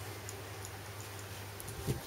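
Faint, even ticking, about three ticks a second, over a steady low hum, with one short thump near the end.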